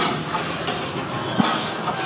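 Haunted-house maze's ambient sound effects played through speakers: a steady rumbling, hissing noise bed, with a single knock about one and a half seconds in.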